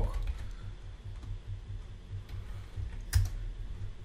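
Typing on a computer keyboard: a few soft key presses, then one sharper click about three seconds in.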